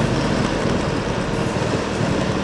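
Riding a Honda motor scooter: steady wind and road noise over the microphone, with the small engine running evenly underneath.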